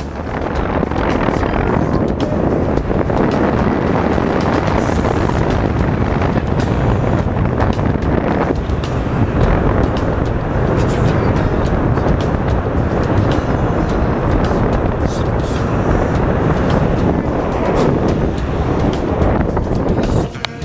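Steady rush of wind buffeting the camera microphone during a tandem parachute's final approach and landing.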